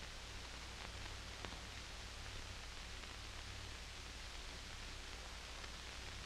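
Steady hiss and low hum of a 1940s film soundtrack, with two faint clicks about a second in.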